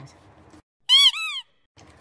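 A short, high-pitched squeak of two quick notes, each rising and then falling, about a second in.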